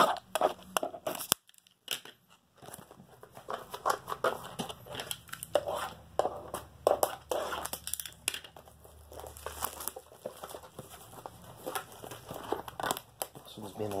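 Plastic shrink-wrap overwrap being torn and crinkled off a cardboard trading-card blaster box, in irregular crackles and short tears; the wrap is hard to get off.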